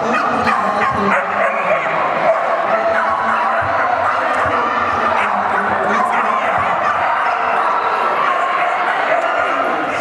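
A dog barking and yipping over the steady chatter of many people in a large hall.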